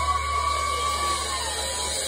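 A single sustained high note from an electric guitar amplifier, feedback or a held note ringing out at the end of the song, sliding down in pitch and stopping near the end, over a low amplifier hum.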